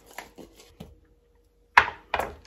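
A hand-held garlic crusher being worked over a chopping board, with a few light clicks, then one sharp knock near the end.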